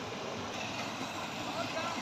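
Mountain stream rushing over rocks, a steady wash of water noise, with a brief voice-like sound near the end.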